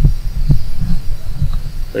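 Four dull, low thumps close to the microphone, about every half second.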